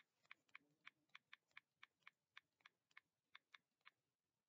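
Faint typing on a keyboard: a run of about fifteen quick key clicks at uneven spacing, around four a second.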